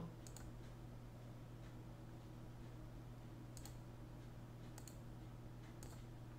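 Very quiet room tone with a low steady hum and a handful of faint, scattered clicks from a computer mouse, two of them close together about halfway through.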